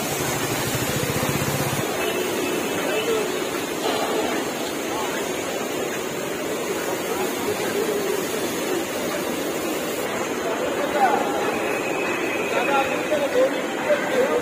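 Steady din of a large railway workshop, with indistinct voices of workers talking in the background.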